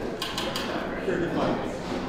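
Indistinct men's voices in a large, echoing room, with a few faint sharp clicks shortly after the start.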